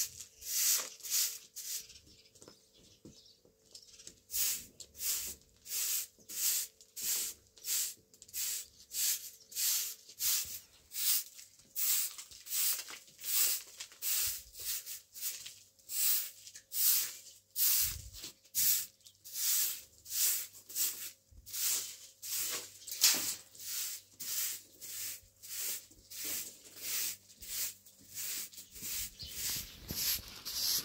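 Short straw broom sweeping a dry, packed dirt yard in brisk, rhythmic strokes, about two a second, with a short pause a couple of seconds in.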